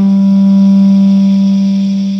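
Electric bass guitar holding a single sustained note that rings at a steady level without dying away.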